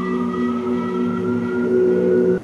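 Violin bowed in a long, slow upward slide, over steady low held tones.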